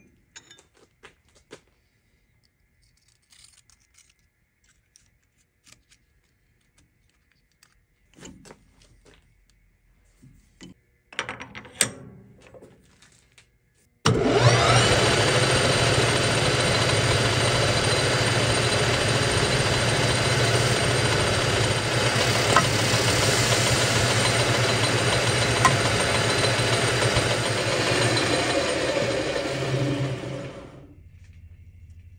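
Metal lathe spindle running steadily with a hum and whine while the cut end of the parted-off screw is faced clean; it starts abruptly about fourteen seconds in. Before that, a few light clicks and a clatter of handling at the chuck.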